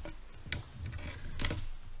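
A few sharp clicks and knocks over a low hum: handling noise at a lectern with two microphones as one speaker steps away and another steps up to it.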